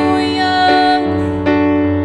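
A woman singing a held note over piano accompaniment in a slow ballad, with new piano chords struck about two-thirds of a second and a second and a half in.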